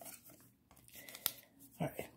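Baseball cards being handled: faint rustling of card stock, with a sharp tick a little past a second in.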